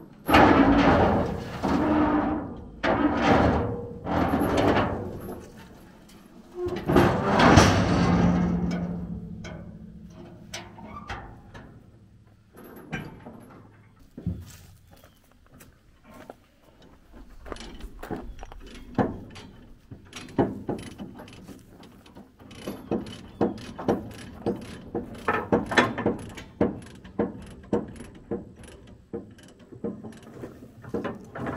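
Heavy tie-down chains clanking and ringing against a steel flatbed trailer several times, then a ratchet chain binder being cranked tight in quick runs of clicks.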